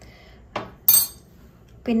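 A metal spoon strikes glassware once with a sharp clink that rings briefly, about a second in. A softer tap comes just before it.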